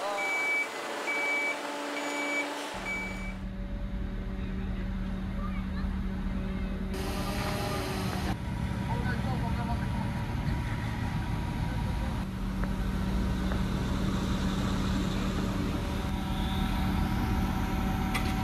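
A vehicle reversing alarm beeps about four times, then a large diesel engine runs steadily: the mobile crane's engine working under load as it lifts the shipping container.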